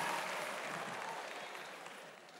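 Congregation applause, dying away steadily.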